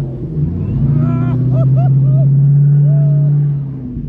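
Ford GT's supercharged V8 revved up and held at steady revs as the car, stuck in snow, is pushed from behind to free it, then the revs drop near the end. Short shouts from the people pushing come over it.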